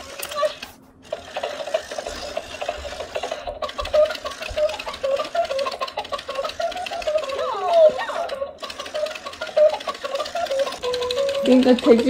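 A battery-powered walking hen toy playing a sung children's tune, with its walking mechanism ticking rapidly and evenly underneath.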